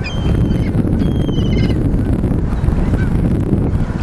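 A steady low rumble of wind buffeting the microphone. Over it, in the first two seconds, a bird gives a few short high-pitched calls, the second one warbling.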